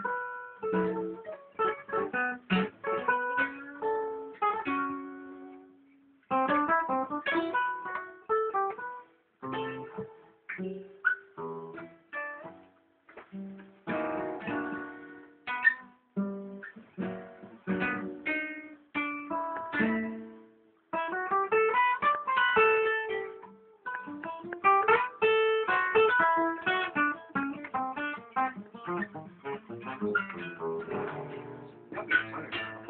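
Acoustic guitar played solo: phrases of plucked single notes and chords that ring and fade, with short pauses between phrases. It is being tried out with lines played up the neck, the quick test of whether a guitar keeps a good sound high on the neck.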